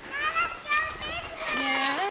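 A high-pitched voice calling out in several short cries that rise in pitch, then a longer call that rises at the end and cuts off suddenly.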